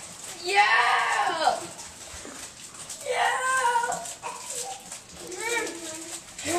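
Several wordless whining calls, each rising and falling in pitch. The first, about half a second in, is the loudest; more follow about three seconds in and near the end.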